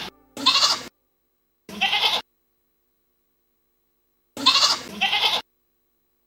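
Goats bleating: a string of short, quavering bleats with pauses between them, the last two coming back to back near the end.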